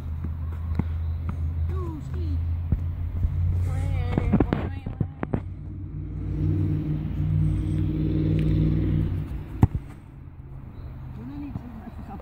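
Steady low outdoor rumble, with a vehicle engine swelling up and fading away in the middle, a single sharp knock a little before the end, and a few brief voices.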